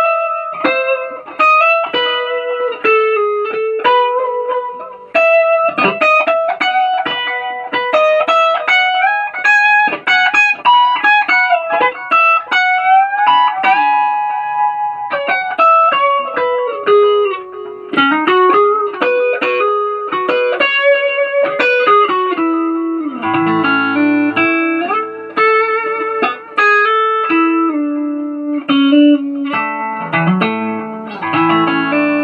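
Telecaster electric guitar with Nuclon magnetic pickups, played with a clean, singing tone. It carries a single-note melody high on the neck with string bends. About 23 seconds in, lower notes and double-stops take over.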